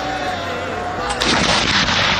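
Artillery field gun firing a salute round: a sudden blast a little over a second in, followed by a rolling echo that carries on.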